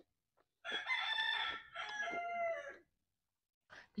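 A rooster crowing once, a call of about two seconds in two parts.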